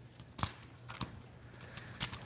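Thin Bible pages being turned close to a pulpit microphone: a few soft papery rustles and clicks, the clearest about half a second in, over a faint steady hum.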